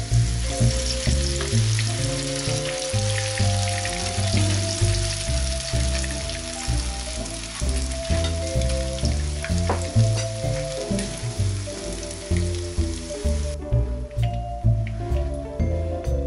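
Hot oil sizzling as spoonfuls of grated potato and onion batter fry in a pan, with background music throughout. The sizzling stops suddenly about three-quarters of the way through while the music carries on.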